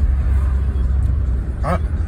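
Steady low rumble of a car being driven, heard from inside the cabin: engine, tyre and road noise with no change in pace. A man's voice starts up near the end.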